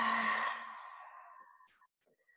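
A woman's deliberate audible exhale through the mouth, a voiced sigh at first that trails off into breath and fades out before the end.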